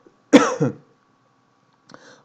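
A man coughs once, briefly, about a third of a second in.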